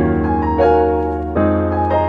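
Relaxing background piano music: sustained chords that change about every second, with a higher melody note over them.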